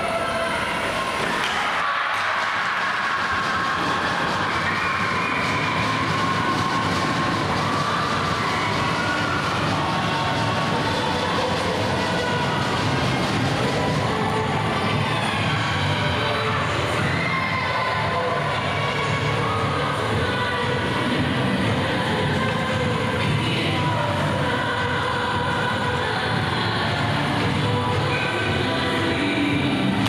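Steady, echoing ice-rink din during a hockey game: skates cutting the ice, sticks, and players' and spectators' voices.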